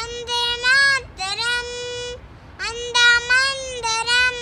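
A young girl singing a Telugu patriotic song unaccompanied, in high held notes and short phrases with brief breaks between them.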